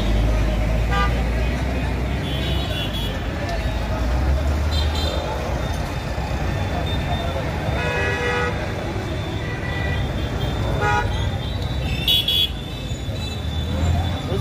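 Road traffic with a steady low engine rumble from passing vehicles, among them a loaded truck. Short vehicle-horn toots sound again and again, about every two seconds, the longest and strongest about eight seconds in.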